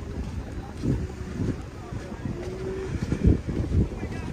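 Wind buffeting a handheld camera's microphone, an uneven low rumble that comes and goes in gusts, with faint voices in the background.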